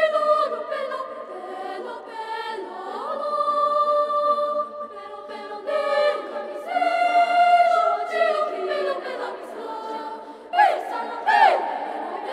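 Children's choir singing a cappella in several parts, with held chords that enter sharply at the start and again about six seconds in; from about ten seconds in the voices make repeated swooping pitch glides.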